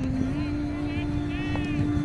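A steady engine hum that steps up in pitch about a third of a second in, over low wind rumble on the microphone, with distant shouting voices around the middle.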